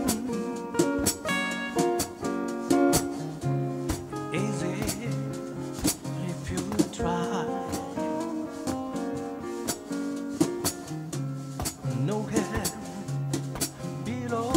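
Live band music: two acoustic guitars playing with a drum kit keeping a steady beat.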